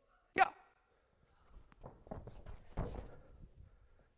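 A brief shout, then hands and feet thudding and scuffing on a tumbling mat as a gymnast skips into a cartwheel and lands, loudest about three seconds in.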